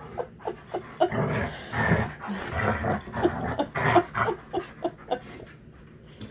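An Alaskan malamute and a Blue Bay Shepherd play-wrestling and vocalising: a quick run of short, pitched dog calls, a few each second, dying down in the last second.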